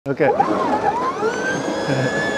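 Electric scooter's motor whining as the rear wheel spins in loose dirt, the pitch rising over the first second and a half and then holding steady.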